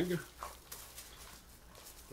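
Faint crinkling of a plastic bag being handled and opened, a few soft crackles after the end of a spoken word.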